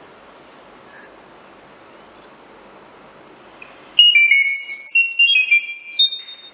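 Chirp data-over-sound signal played through a speaker: about four seconds in, a two-second run of short, high, pure tones that step quickly up and down in pitch, two or three sounding at once. It is the acoustic message carrying the 'turn on the reading lights' command to the Arduino Nano 33 BLE Sense, which switches the lights on.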